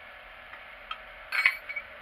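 A small steel hand tool clinking sharply once against metal, about one and a half seconds in, after a faint tap; otherwise a low steady hiss.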